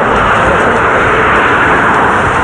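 Road traffic passing close by: a loud, steady rush of tyre and engine noise.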